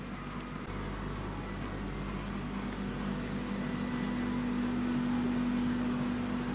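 Steady low machine hum with a held drone, the running noise of room equipment such as aquarium pumps or ventilation. It gets a little louder in the second half.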